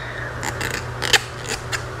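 Fingers brushing and tapping right at the microphone, as if parting hair for a lice check: a scatter of crisp, crackly clicks, the loudest a little past a second in, over a steady low hum.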